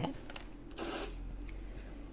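Soft rubbing and rustling of a thin paper serviette being folded and pressed around a cardboard 35mm slide mount, loudest about a second in.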